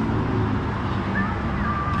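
Steady low hum of an idling vehicle engine with road-traffic noise, with a faint thin high tone in the second half.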